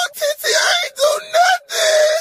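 A man wailing in a high, strained crying voice, about five short cries in a row.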